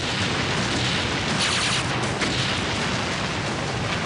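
A barrage of explosions going off in quick succession, run together into a continuous rumble with sharp cracks layered in, loudest around the middle.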